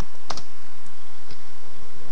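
Computer keyboard keystrokes: one sharp key click about a third of a second in, and a couple of fainter clicks later, over a steady background hiss.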